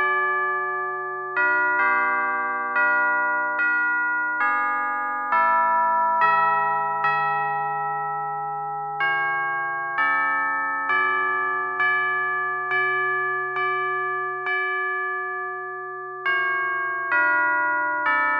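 A hymn tune played on a keyboard with a bell-like electric piano tone, chord by chord. A new chord is struck about once a second and dies away, and longer chords are held at the ends of phrases, about halfway through and again near the end.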